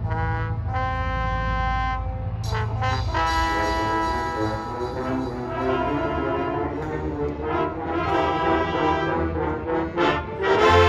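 Marching band brass playing: a held chord for about two seconds, then a fuller passage with many notes moving.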